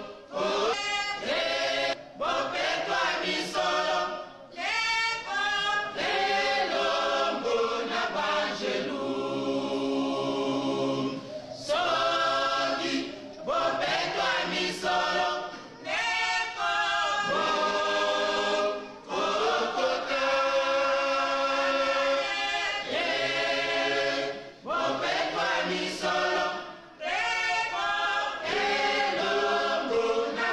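Choir of many voices singing a hymn unaccompanied, in phrases of a few seconds with short breaks between them.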